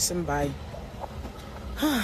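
Speech only: short untranscribed bits of a voice, with a loud burst of hiss near the end as the voice comes in again.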